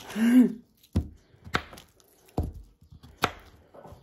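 A short laugh, then four separate knocks, each roughly a second apart: two dull thuds and two sharper clicks, from things being set down or struck while a zucchini is handled for cutting.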